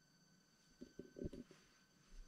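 Near silence: quiet room tone with a faint steady high whine and a few soft, brief sounds about a second in.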